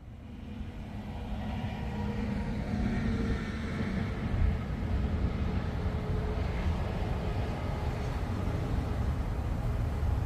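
Steady rumble of distant interstate traffic, fading in at the start and then holding even.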